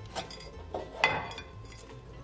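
A metal loaf pan knocking and clinking against a plate as a cake is turned out of it: a few short taps, the loudest about a second in.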